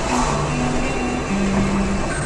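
Music from a car radio, a few held low notes, over steady road and engine noise inside a moving car's cabin.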